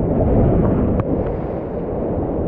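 Wind buffeting an action camera's microphone: a loud, even low rumble, with a faint click about a second in.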